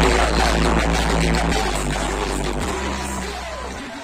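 Hip-hop beat played loud over a concert PA at a live rap show, with deep sub-bass notes that change every second or so. The bass cuts out just before the end.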